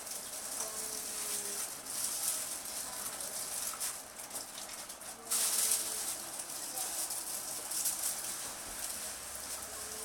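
Packaging rustling and scraping as the figure's box and foam inserts are handled, in uneven swells with the loudest about five seconds in.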